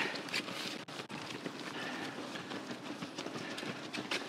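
Footfalls of a pack of distance runners on a park path, a continuous patter of many feet.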